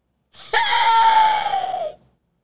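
A woman's long, high-pitched vocal squeal of exclamation, held for over a second and dipping slightly in pitch just before it stops.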